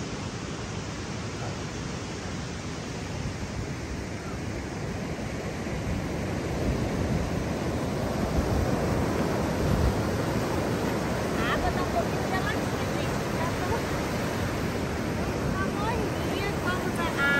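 Ocean surf breaking and washing up a sandy beach, with wind buffeting the microphone. The steady rush grows louder about six seconds in.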